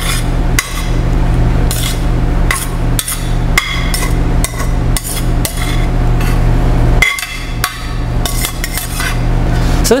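Metal spoon scraping and clinking against a stainless steel pan as whole wheat pasta is stirred through the pan sauce and scraped out into a metal mixing bowl. Irregular clinks and scrapes, with a short pause a little after seven seconds in.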